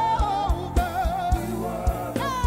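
Live gospel praise music: a sung melody line over keyboard accompaniment and a steady, quick drum beat.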